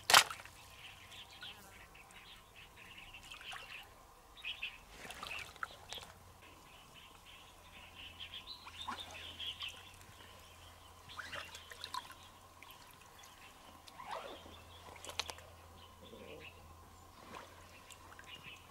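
Shallow stream water sloshing and splashing in short spells around legs and a wicker basket, with a sharp splash right at the start as the loudest sound. Intermittent bird chirps run underneath.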